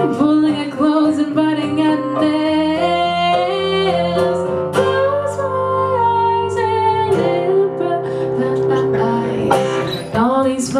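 Live song: a woman singing long held notes over strummed acoustic guitar and keyboard.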